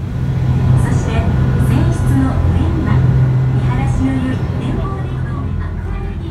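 A sightseeing boat's engine runs with a loud, steady low drone, while passengers' voices chatter over it.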